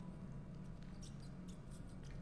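Faint light clicks and rustles of small objects being handled on a wooden table, over a low steady hum.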